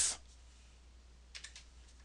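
A few computer keyboard key clicks in quick succession about a second and a half in: keystrokes deleting selected text in a code editor.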